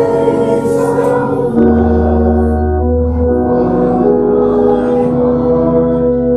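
Hymn music: sustained chords over low held bass notes that change every second or two, with a congregation singing along.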